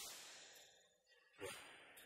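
A pause between spoken phrases: near silence, broken about a second and a half in by one short audible breath from the speaker that trails off.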